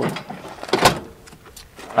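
Camp Chef outdoor camp oven's metal door swung shut by its handle, latching with a single sharp clack a little under a second in.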